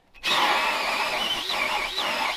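Cordless drill boring a large hole into a wooden beam, starting a fraction of a second in: the motor runs under load while the bit cutting the wood gives a wavering, high-pitched squeal.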